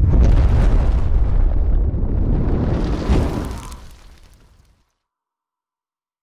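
Logo-intro sound effect: a sudden deep boom with a rushing noise over it, swelling once more about three seconds in and then dying away.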